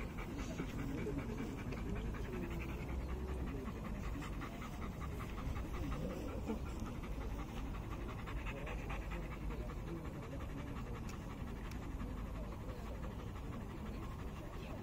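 Belgian Malinois panting steadily and rhythmically with its mouth open.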